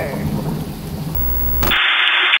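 Steady rain falling. About a second in, a loud low rumble rises over it, and near the end a short burst of static-like hiss from a glitch transition effect cuts in.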